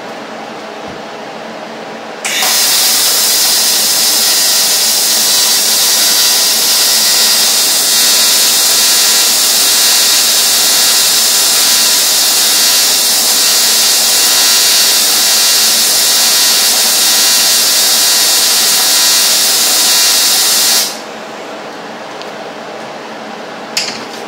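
AC TIG welding arc from a Rossi TC205 welder on aluminium: a loud, steady buzzing hiss that starts abruptly about two seconds in and cuts off about eighteen seconds later. The arc is feeble and leaves the aluminium barely hot even at 175 amps, a sign of a fault in the welder.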